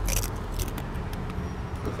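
Low, steady background rumble of street traffic, with a few faint crackles in the first half-second.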